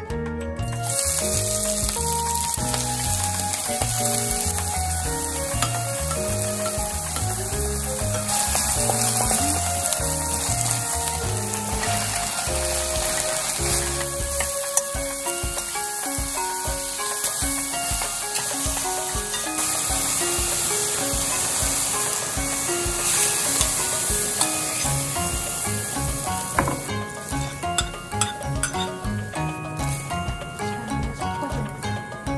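Shiitake mushrooms and green onion sizzling as they fry in a hot stainless steel pan, stirred with a wooden spatula. The sizzle starts about a second in and fades near the end.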